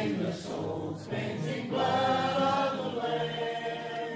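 A church congregation singing together, with long held notes.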